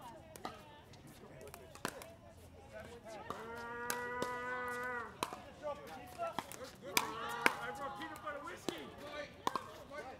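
Pickleball rally: a series of sharp pops from paddles striking the plastic ball. A person's long drawn-out call on one steady pitch lasts about two seconds in the middle, and short voiced calls follow soon after.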